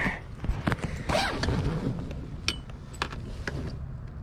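Zipper of a soft-sided fabric suitcase being pulled open, with a short rasping zip about a second in. Scattered clicks and knocks follow as the lid is flipped open and the contents are handled.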